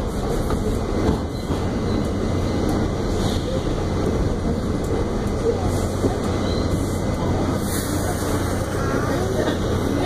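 R68 subway car running through a tunnel: a steady rumble of wheels on the rails with a low hum underneath.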